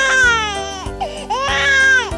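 A baby crying, two long wails that each rise quickly and then fall slowly, over children's backing music.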